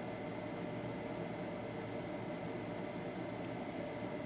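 Steady low background hiss with faint steady hum tones, and no distinct events: workbench room tone.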